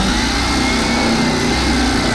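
Handheld electric cutter running steadily as it cuts through the bottom of a handbag.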